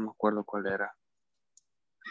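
A person's voice speaking briefly over a video call, cut off abruptly after about a second, followed by silence with one faint tick.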